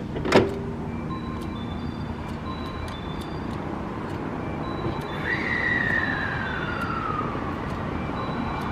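JR West 221 series electric train standing at a platform before departure, with a steady low hum. A single sharp knock comes about half a second in, and a whistle-like tone falls slowly for about two seconds from just past midway.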